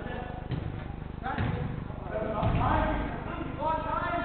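Indistinct shouts from footballers echoing around an indoor five-a-side hall, with a few dull thuds of the ball being kicked, the heaviest about two and a half seconds in, over a steady low hum.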